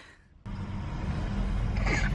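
A brief moment of near silence, then a steady low vehicle-engine rumble that slowly grows louder.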